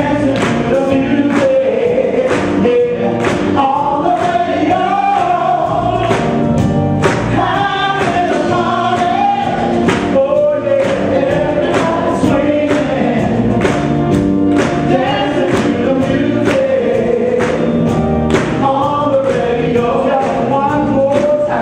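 Live soul music: a men's vocal group singing together in harmony over a band with a steady drum beat.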